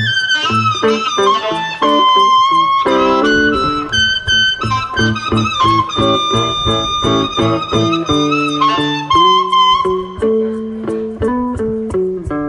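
Live blues played on amplified harmonica and electric guitar. The harmonica plays held and bending notes, with one long held note midway, over the guitar's picked notes.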